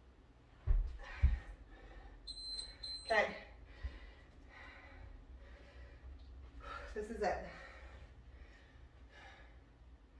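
Two dull thumps of a body rolling down onto a thin exercise mat on a wooden floor about a second in, then a short high electronic beep, and two brief vocal sounds with a falling pitch, around three and seven seconds in.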